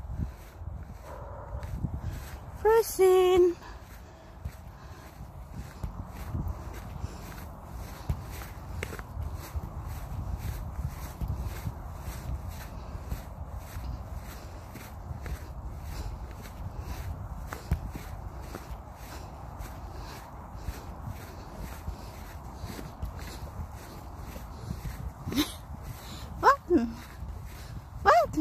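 Footsteps on frosted grass at an even walking pace, about two steps a second, over a low rumble. A short pitched voice sound comes about three seconds in, and another brief one near the end.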